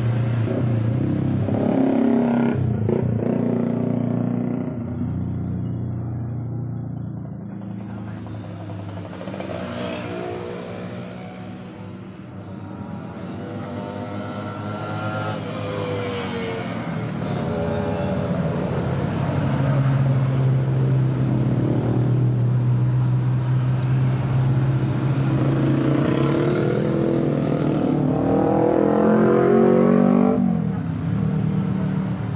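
Motorcycles and scooters passing one after another, their engines rising and falling in pitch as each goes by. A steady low engine note holds through the later part, and another bike accelerates near the end.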